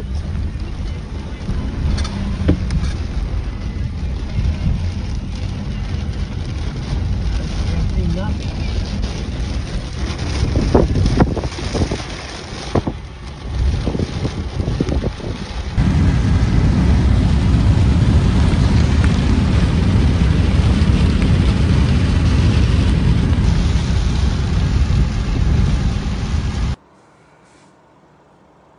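Loud wind and road noise inside a moving car with a window open, a low rumble that grows heavier and steadier about halfway through, then cuts off suddenly near the end.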